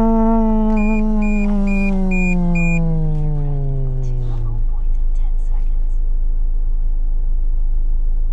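A voice drawing out one long note ("fum"), held and then slowly sliding down in pitch until it stops about four and a half seconds in. Five short high beeps about half a second apart sound over it near the start, and a steady low hum runs throughout.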